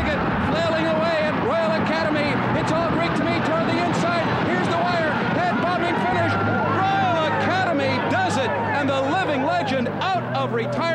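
A horse-race commentator's fast, excited call of the finish, over crowd noise from the racecourse.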